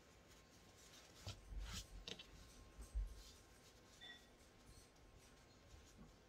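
Faint rustling of a layered cloth pad of flannel and PUL laminate being handled and turned in by hand, a few soft rubs about a second in and a soft bump near three seconds; otherwise near silence.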